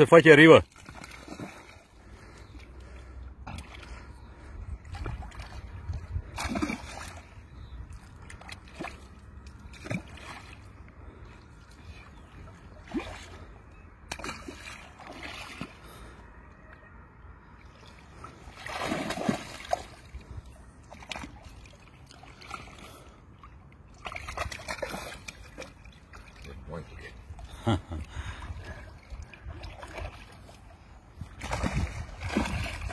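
Irregular splashing and sloshing of shallow river water as a fish is landed by hand at the water's edge, in short separate bursts with louder flurries about nineteen and twenty-five seconds in.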